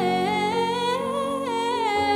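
A woman singing a long held melodic line on open vowels, rising about a second in and easing back down near the end, over sustained keyboard chords.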